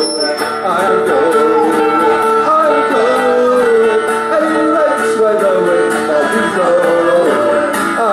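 Live folk band playing a passage without words: strummed acoustic guitar and mandolin under a melody from a melodica, steady and loud.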